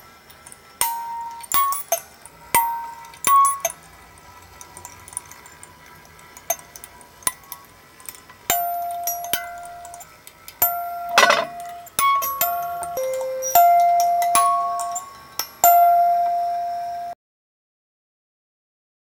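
Homemade sanza (thumb piano) played in a sparse improvisation: single ringing metal-tine notes, each starting sharply and dying away, some held longer, with one louder clanging hit about eleven seconds in. The sound cuts off abruptly about a second before the end.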